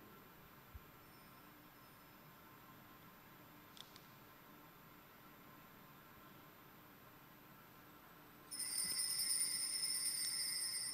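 Near-silent church room tone with a couple of faint taps, then about eight and a half seconds in a high-pitched ringing of small altar bells starts suddenly and holds, at the priest's communion.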